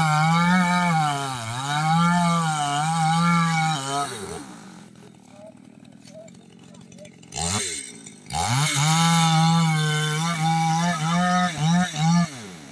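Chainsaw running at full throttle, its pitch wavering as it cuts into a tree trunk. After about four seconds it drops back to a low idle, is blipped once, and then runs up to full throttle again from about eight seconds in.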